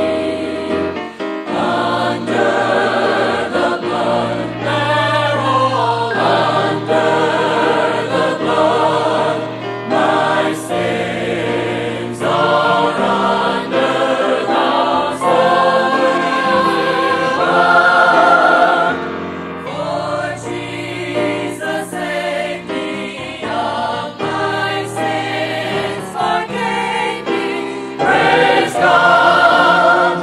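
A mixed group of singers performing a Southern gospel convention song in harmony, accompanied by piano, swelling louder near the end.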